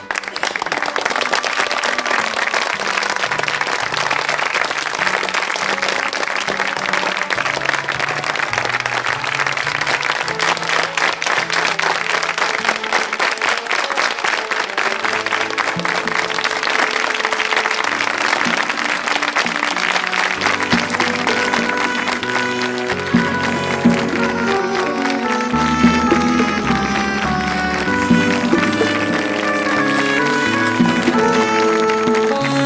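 Theatre audience applauding over closing music. The clapping is thick at first, and the music's melody and bass line come to the fore over the last third.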